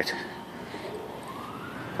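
A faint siren wailing, its pitch rising over the second half, over steady outdoor background noise.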